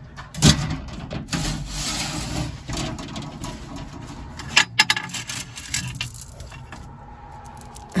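Jewelry being rummaged in a glass display case: a sharp knock about half a second in, then rubbing and rustling among the pieces, two sharp clicks about halfway through, and the light clink of a turquoise and dark-bead necklace being handled as it is drawn out.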